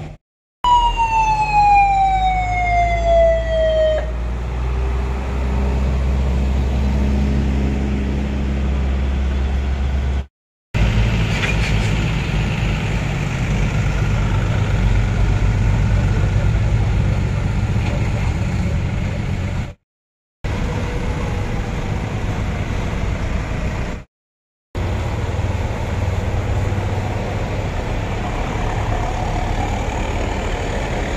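Army trucks and a bus driving past with their engines running in a low steady rumble, and a siren's falling wail over the first few seconds that stops abruptly about four seconds in. The sound drops out briefly several times at cuts.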